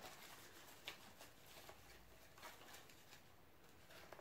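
Faint rustling of dried pressed flowers and leaves being picked through by hand in a cardboard box, with a few soft crackles, the first about a second in.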